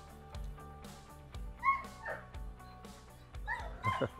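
Background music with a steady beat, and a Dobermann giving short barks twice: about a second and a half in, and again near the end.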